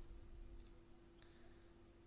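Near silence with a steady low hum, and a faint computer mouse click about half a second in.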